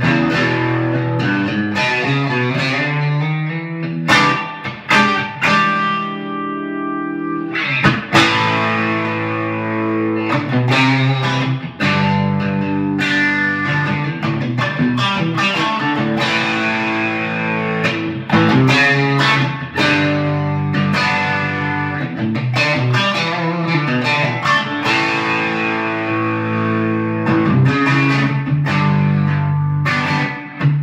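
Fender American Elite Telecaster Thinline electric guitar played through a Fender Bassbreaker 45 combo and a Marshall DSL 100H head running together in stereo, with chorus, delay and spring reverb. It plays picked chords and single-note lines, and about five seconds in one chord is left to ring for a few seconds.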